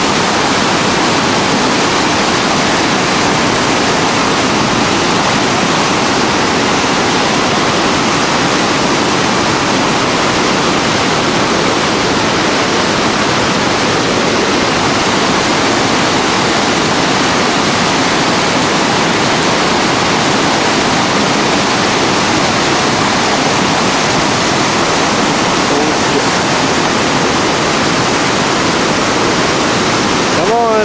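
Whitewater rapid pouring over a rock ledge: a loud, steady rush of churning river water.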